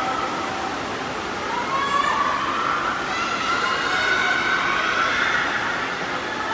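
Spectators cheering and shouting for the swimmers, with long high-pitched calls that rise slowly in pitch from about a second and a half in, over a steady wash of crowd and pool noise.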